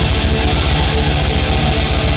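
Death metal band playing live at full volume: distorted guitars with a fast, even low drum pulse underneath, a dense, loud wall of sound.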